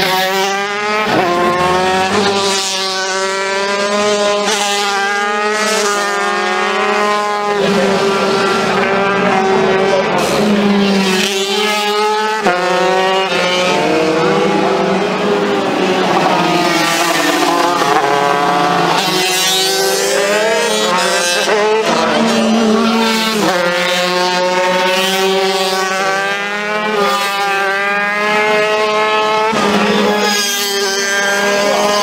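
Motorcycle engine revving hard and continuously, its pitch climbing, dropping and climbing again every second or two as the rider accelerates and shifts.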